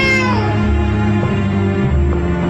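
A baby's single wailing cry, rising then falling, that ends about half a second in, over tense background music with steady low sustained notes.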